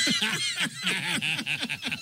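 Men laughing, a run of quick short bursts of laughter.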